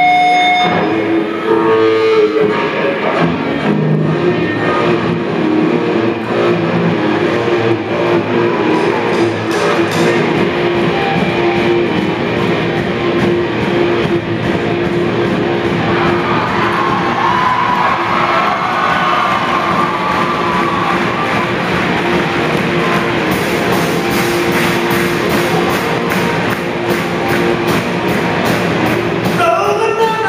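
Live rock band playing: drum kit and electric guitars, with a held note running under most of it and the low end of the band filling in about ten seconds in.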